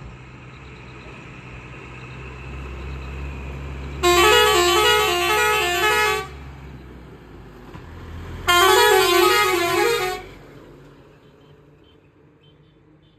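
A light truck's engine running, growing louder as it approaches, with two blasts of a musical multi-note horn, each about two seconds of quickly changing notes, a few seconds apart. The engine sound falls away after the second blast as the truck passes.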